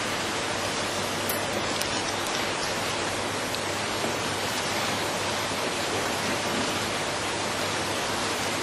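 Steady hiss with a faint low hum under it, and a few faint ticks about a second and a half in.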